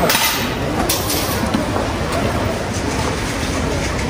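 Two short, sharp clattering sounds about a second apart, consistent with offerings tossed into a wooden temple offertory box, over a steady low rumble of outdoor ambience.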